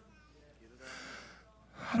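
A man's sharp breath taken close to a handheld microphone, a half-second hiss about a second in, in a pause in his speaking; his voice starts again just before the end.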